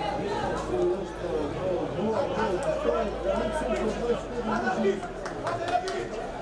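Indistinct chatter of several men's voices talking over one another, with no clear words.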